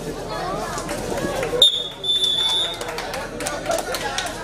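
A referee's whistle blown about halfway through, over crowd chatter: a short blast, then a longer steady one of under a second.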